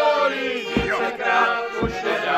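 Folk song sung by a group to piano-accordion accompaniment, with a low thump about once a second keeping the beat.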